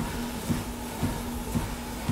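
Steady low mechanical hum, with a faint knock about every half second.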